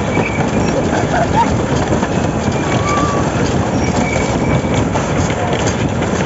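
Roller coaster train rattling and clattering along its track in a steady, loud run, with faint rider voices over the clatter.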